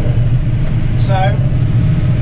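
Massey Ferguson tractor engine running steadily under load, a loud low drone heard from inside the cab.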